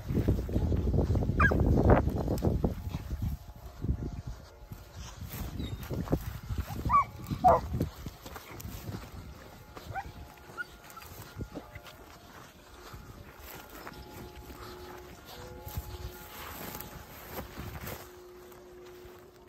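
Segugio Italiano scent hounds giving short yelps while working through scrub: one about a second and a half in and two close together around seven seconds in. Loud rustling noise runs underneath and is strongest in the first three seconds.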